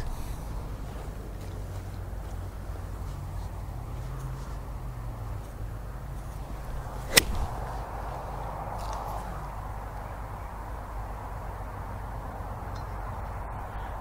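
A five-iron striking a golf ball: one sharp, crisp click about seven seconds in.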